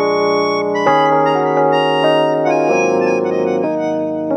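Instrumental music played on electric piano and melodion (a keyboard harmonica). Sustained reedy chords change about every second or two.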